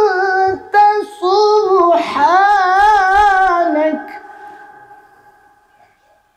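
A man reciting the Quran in the melodic chanted style into a microphone: long, ornamented held notes with a wavering pitch. He stops about four seconds in, and the voice dies away in echo over the next two seconds.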